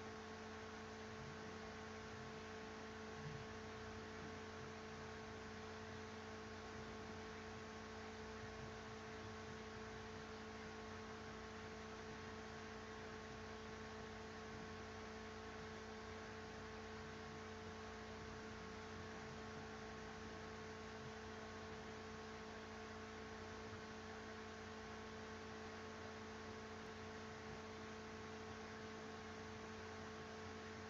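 Faint, steady electrical hum of several held tones over a low hiss, unchanging throughout, with one small tick about three seconds in.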